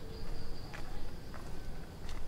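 A steady high-pitched insect trill, with two footsteps on a concrete path partway through.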